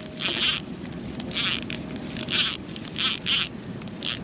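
Spinning reel being cranked in a series of short raspy bursts, winding in line on a fish that has just taken the bait.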